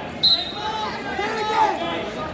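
A referee's whistle gives one short blast about a quarter second in, starting the wrestling bout, over the chatter of voices in the gym.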